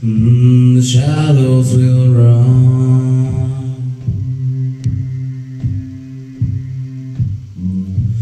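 A cappella male vocals between lyric lines: a deep bass voice holds a low, steady hum under higher harmonising voices that shift pitch in the first couple of seconds. In the second half a soft beat of short knocks comes about every 0.8 s.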